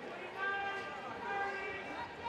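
Faint background voices of people at the meet calling out during the race.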